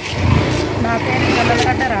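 Speech: a woman talking into a handheld microphone over a steady low rumble, with her voice starting about a second in.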